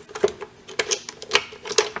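A few sharp plastic clicks and knocks, about five over two seconds, as a plastic 35 mm film cassette is seated in a daylight bulk film loader and the loader's parts are handled.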